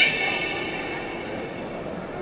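A high, steady whistle with strong overtones, starting loud and fading away over about a second and a half, over a steady background hiss.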